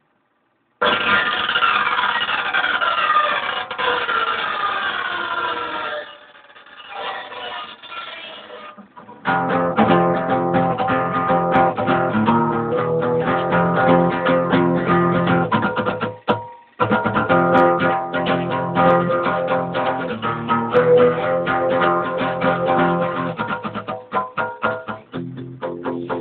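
Acoustic guitar being played: after a moment of silence, a few seconds of falling pitch glides, then steady rhythmic picked chords and notes, cutting out briefly about two-thirds of the way through.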